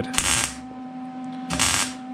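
Wire-feed (MIG) welder arc crackling on cab-corner sheet steel in two short bursts, one at the start and one about a second and a half in, over a steady hum.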